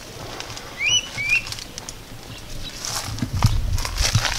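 A wild bird calling a pair of short, high chirps, each with a quick upward flick, about a second in. Low rustling and a few soft knocks grow louder near the end.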